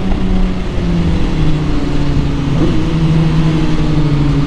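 Suzuki GSX-R1000 inline-four engine running at speed under way, its note slowly falling as the bike decelerates, with wind rushing over the microphone.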